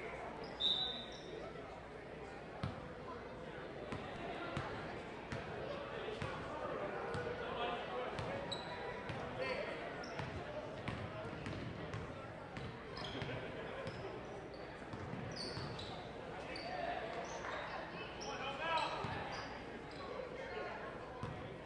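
Basketball dribbling on a hardwood gym floor, with brief high squeaks of players' shoes, over a steady murmur of crowd voices echoing in a large gym.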